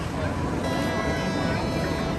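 Monorail train coming into the station: a low rumble, joined about half a second in by a steady high-pitched whine made of several tones at once.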